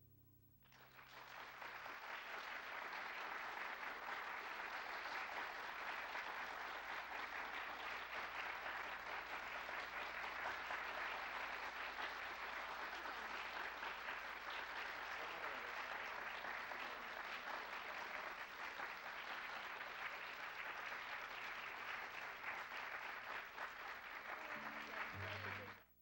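Audience applauding steadily. It starts about a second in and dies away just before the end.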